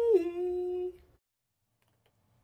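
A woman's voice drawing out one sung note that rises and then holds steady for about a second before cutting off abruptly into silence.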